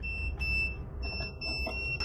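Luminous home inverters beeping as they are switched back on from nearly flat batteries: several high-pitched electronic beeps of uneven length, overlapping, over a low hum.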